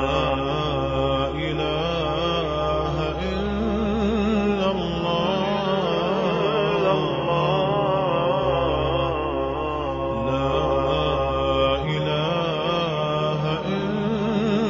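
Background Islamic nasheed: a voice chanting a slow, wavering, drawn-out melody over a steady low drone.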